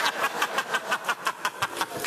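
Laughter: a rapid, even run of laughing pulses, about seven a second.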